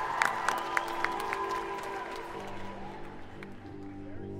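Indoor percussion ensemble in a soft passage: the ringing of a loud hit dies away under a run of light mallet strikes with short ringing pitches, then low sustained tones come in about two seconds in and the music grows quieter.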